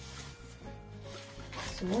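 Soft background music, with faint rustling of raffia and leaves as the cord is wrapped around the bouquet's stems to bind it. A woman says "So" near the end.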